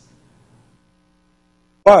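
A pause in a man's amplified talk, nearly silent but for a faint steady electrical hum from the sound system. His speech starts again just before the end.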